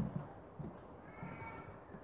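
A pause in a man's speech: faint room noise, with a faint, brief high tone about a second in.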